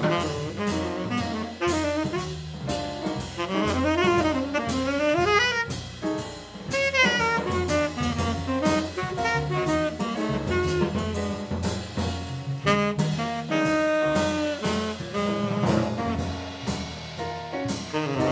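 Live jazz quartet: a saxophone plays a solo line of fast runs rising and falling, over piano, double bass and drums.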